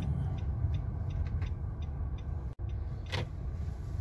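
Car cabin noise as the car drives slowly: a steady low engine and tyre rumble, with faint, regular ticking about three times a second.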